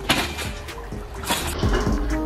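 Two rushing bursts about a second apart as a person bounces on a backyard trampoline, over quiet background music.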